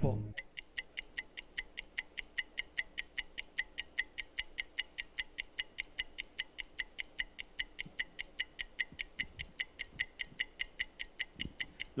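Game-show answer-timer sound effect: a ticking clock giving about four even ticks a second as the contestants' answer time counts down. It stops shortly before the end, when time runs out.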